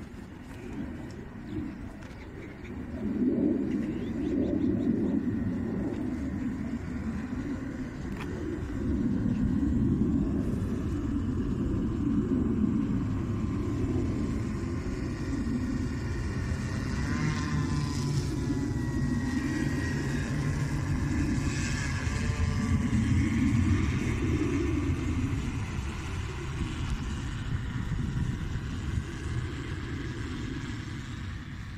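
Multirotor agricultural sprayer-fogger drone in flight, its motors and propellers droning steadily with a swelling low rumble. About halfway through, the pitch of the motors rises and falls for several seconds.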